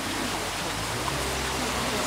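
Steady hiss and low hum of a tour boat under way in a narrow canal: its motor running, with wind and water noise over it. The low hum grows a little stronger about a second in.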